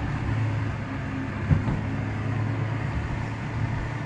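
Steady low drone of a car's engine and tyres on the road, heard inside the cabin through a dashcam microphone, with one short thump about a second and a half in.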